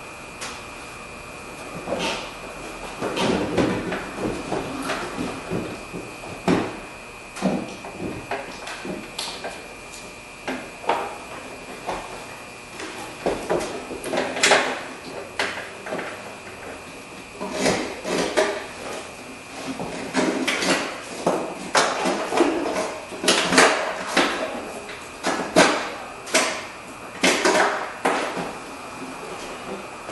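Irregular knocks, clunks and rattles of hand tools and the side mirror against the bare metal door shell of a Ford F250 as the mirror is unbolted and lifted off. Some are single knocks and some come in quick clusters, busier in the second half.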